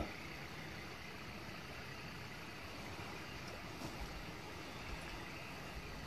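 Faint steady outdoor background noise with no distinct source, and two small soft bumps in the second half.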